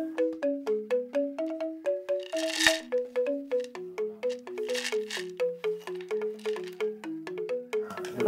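Background music of struck pitched percussion playing a quick two-part melody of short, fast-decaying notes, with one sharper hit about two and a half seconds in.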